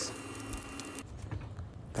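Quiet background noise: a faint steady hum for about the first second, then a few faint light taps.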